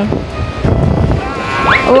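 Shallow sea wave washing up over the wet sand at the water's edge, a low noisy wash mixed with wind on the microphone. A voice rises in pitch just before the end.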